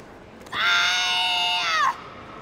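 A female karateka's kiai during a kata: one loud, long shout held at a steady high pitch, starting about half a second in and dropping in pitch as it cuts off. In kata the kiai marks a decisive technique.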